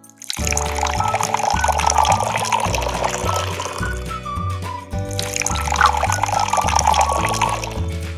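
Banana milkshake poured from a plastic blender cup into a glass, the stream splashing into the glass, with a short break about five seconds in before it pours again. Background music plays throughout.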